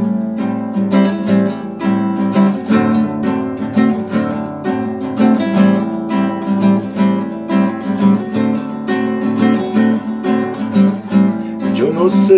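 Acoustic guitar strummed in a steady rhythm, chord after chord, starting suddenly: the instrumental introduction to a song, before the voice comes in. Heard through a video call's audio.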